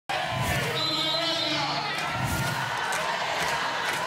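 A man's voice shouting through a handheld microphone and loudspeaker at a street protest, over crowd noise, with two deep thumps about two seconds apart.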